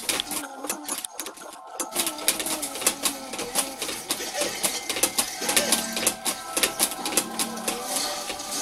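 Irregular clicking and rattling of hard plastic, from a baby's activity jumper and the toys on its tray, over steady electronic tones from the jumper's toys and short baby vocal sounds.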